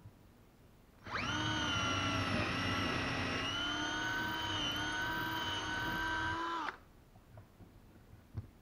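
Cordless drill running in a steady whine for about five and a half seconds, its pitch sagging briefly under load early on, then stopping abruptly.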